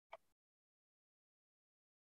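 Near silence, with one brief faint sound just after the start.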